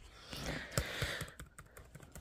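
Keys on a Dell Latitude 5500 laptop keyboard tapped several times: soft, scattered clicks over a faint rustle.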